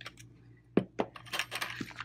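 Clay packaging being handled: a plastic tub is moved off the work surface with two sharp knocks a little under a second in, then foil pouches crinkle and rustle as they are shifted about.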